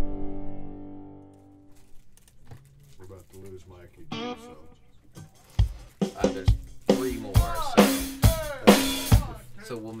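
A sustained synth chord dying away, then, after a quiet stretch, a run of snare drum and rimshot hits on a drum kit, about two a second, with a voice among them.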